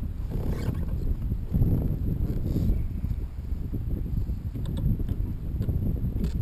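Wind buffeting an action camera's microphone: a low, uneven rumble with a few light clicks near the end.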